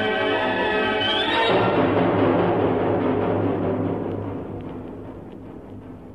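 Orchestral music from a recorded piano concerto: a sustained full orchestral chord, a quick rising run about a second in, then a loud percussive roll that fades away over about four seconds.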